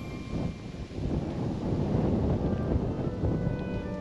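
Wind buffeting the microphone in a rough, uneven rumble, with faint background music under it.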